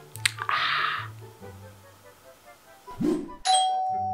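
Background music with a steady bass line, a short swish about half a second in, then the music drops out for a moment and a bright bell-like ding rings out and fades slowly near the end.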